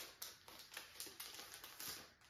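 A clear plastic wrapper and the card cover of a notebook being handled, crinkling and rustling in a quick series of soft clicks as the notebook comes out of its sleeve.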